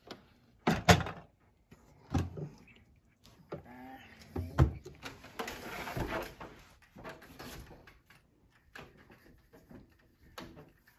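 Door of a wooden toy play kitchen's fridge being swung open and knocked shut, with a loud double knock about a second in, then further knocks and handling clatter over the next few seconds.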